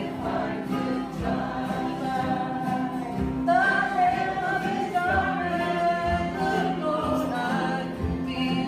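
A large bluegrass group singing together over acoustic guitars and upright basses. The voices grow louder about halfway through.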